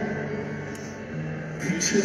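Live stadium rock concert sound in a gap between the singer's spoken lines: a low held note from the stage, stepping down once about halfway through, over faint crowd noise.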